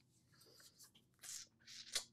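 Near silence with a few faint soft rustles of hands being clasped and rubbed together.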